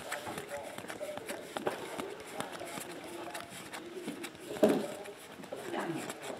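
Trading cards being flipped through by hand: a run of quick flicks and slides of card stock against the stack, with one louder rustle about two-thirds of the way through. Faint voices are heard behind.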